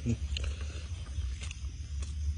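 Eating sounds: a brief hummed "mm" right at the start, then a few faint clicks of a metal spoon and mouth noises as a spoonful of rice and steamed fish is scooped up and taken into the mouth, over a steady low hum.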